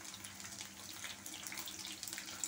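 Chicken pieces deep-frying in hot oil in a kadai, a steady sizzle.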